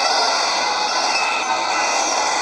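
Steady shortwave static hiss from the speaker of an XHDATA D-808 portable radio tuned to 11720 kHz, the noisy background of a weak, long-distance AM signal.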